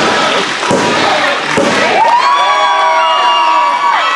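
Wrestling crowd cheering and shouting, with a couple of thuds on the ring mat in the first two seconds. About halfway in, a long, high, held yell rises over the crowd.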